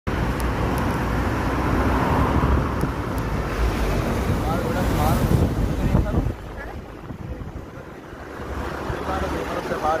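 Wind rushing over the microphone with road noise from a moving motorcycle. The rush drops off sharply about six seconds in, leaving a quieter street background with faint voices.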